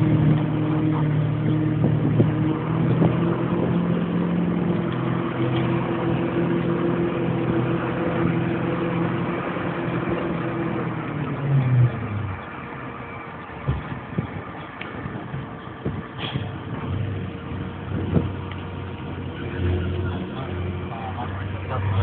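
Heavy truck engine running steadily at raised speed, then dropping to a lower idle about twelve seconds in.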